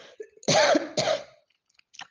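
A woman coughing twice in quick succession, the two coughs about half a second apart.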